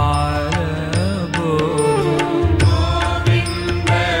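Hindu devotional music: a voice singing a chant-like melody over a beat of percussion strokes and a steady bass.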